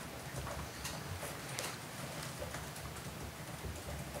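Faint, scattered light taps and rustles of pens and papers on a table, over a low steady room rumble.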